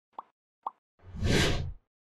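Logo-intro sound effect: two short pops, then about a second in a whoosh with a deep boom under it that swells and dies away within under a second.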